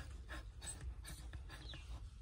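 Mother dog panting faintly and quickly, a few breaths a second, shortly after giving birth to her puppy.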